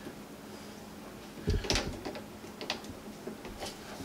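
Plastic sink drain pipes clicking and knocking as they are pushed together and a beveled slip-joint fitting is worked into its seat, in a few light taps with the loudest cluster about a second and a half in.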